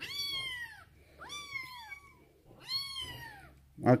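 Young kitten mewing three times, each call a high, thin cry that falls in pitch and lasts under a second.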